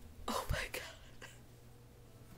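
A woman whispering in short breathy bursts with a soft low bump in the first second, then quiet room tone with a steady low hum.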